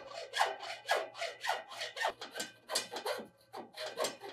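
Hacksaw cutting through the aluminium rail of a pool-fence panel in quick, even back-and-forth strokes, about three a second.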